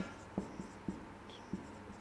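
Marker pen writing on a whiteboard: a few faint short taps and scrapes as the letters are stroked on.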